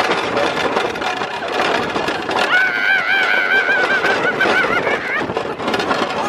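Roller coaster ride: steady rush of wind and train noise on the microphone, with a rider's long, wavering high scream from about two and a half seconds in until about five seconds.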